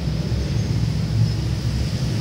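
Steady low rumble of background noise with no distinct event in it.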